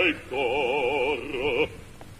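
Operatic bass voice singing in Italian with a wide vibrato: a held note and then a second, shorter one, breaking off into a pause near the end.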